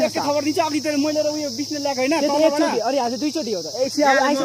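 A steady high-pitched insect drone, with a man's voice talking over it throughout.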